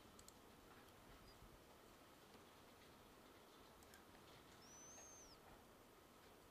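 Near silence: room tone with a few faint computer mouse clicks, and one faint, brief high-pitched chirp about five seconds in.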